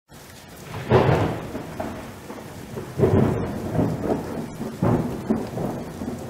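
Thunder-and-rain sound effect in a channel intro: rumbling thunder crashes about a second in, at three seconds and near five seconds, each fading over a steady hiss of rain.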